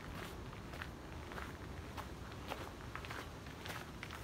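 Footsteps crunching on a gravel path, about two steps a second, over a steady low rumble.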